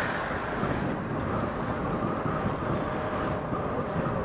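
Steady rush of wind and road noise from a motorcycle being ridden at moderate speed, with its engine running underneath.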